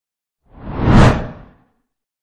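A single whoosh sound effect that swells up and dies away in about a second.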